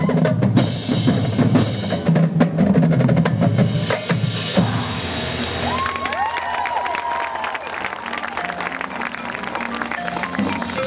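Marching band playing a field show, with full ensemble and drum line for the first four and a half seconds or so, then dropping to a softer, thinner passage carried by the front-ensemble percussion.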